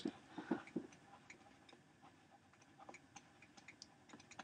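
Faint, irregular clicks of a stylus tapping on a tablet screen while handwriting, a few slightly louder in the first second.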